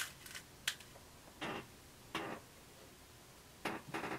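A few faint, brief rustles of fabric being handled, with a light click a little under a second in.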